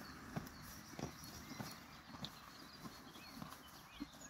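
Horses munching feed off the ground: a string of soft, irregular crunches about every half second to second.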